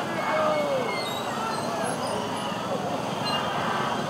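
Many motorcycle and scooter engines running at low speed in a dense crowd, with people's voices calling out over them.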